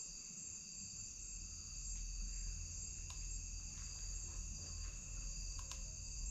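A steady night chorus of crickets and other insects, several high trilling pitches held without a break, with two faint ticks, one about halfway through and one near the end, over a low rumble.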